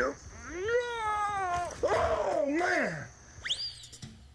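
Drawn-out, wavering vocal sounds: about four long mewing or wailing calls in a row, their pitch bending up and down. Near the end there is a brief high whistle-like glide that rises and falls.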